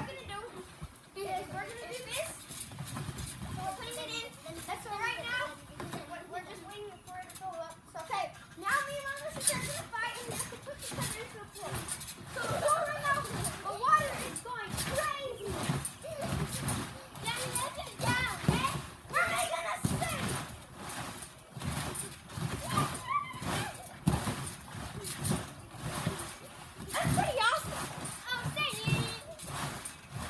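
Children calling out and playing on a trampoline, with a dense run of thumps from their bouncing.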